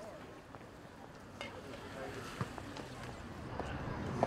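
Quiet outdoor background noise: a low steady hiss with a few faint, scattered clicks.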